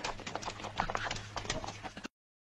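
A rapid, irregular series of light clicks and knocks.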